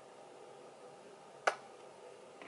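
Quiet room tone, broken about one and a half seconds in by a single sharp click from handling a plastic squeeze bottle of paint as it is lifted away from the pour.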